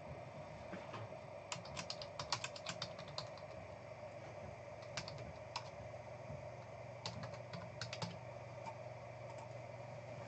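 Computer keyboard being typed on in three short bursts of rapid key clicks, over a steady background hum.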